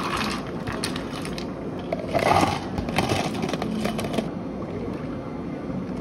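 Ice cubes tipped from a scoop into a clear plastic cup, clattering, with a second clattering pour about two seconds in and scattered clinks of settling ice after it. From about four seconds in, only a low steady background hum remains.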